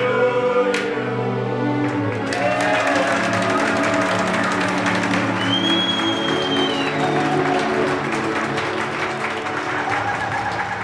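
Voices singing together over music for the first two seconds, then a group clapping along with the music. A short, high whistle-like tone is held about halfway through.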